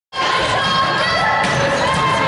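Many volleyball players' voices and shouts echoing around a gymnasium, with a ball struck once about one and a half seconds in.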